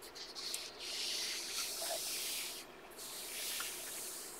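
Paper rustling as a coloring-book page is turned, then a hand rubs the new page flat: a soft, hissy swish with a brief pause a little before three seconds in.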